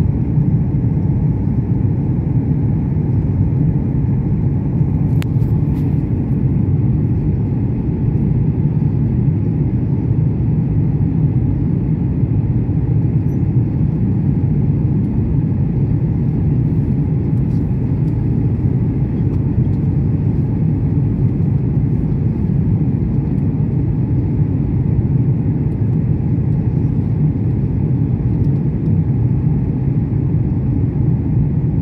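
Airliner cabin noise on the landing approach: a steady, deep rumble of engines and airflow heard from inside the cabin.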